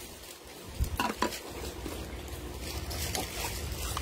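Handling noise from a plastic insulated cup: a couple of light knocks about a second in, then soft rustling and scraping.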